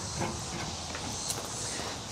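Faint steady outdoor background hiss, with a light click shortly after the start.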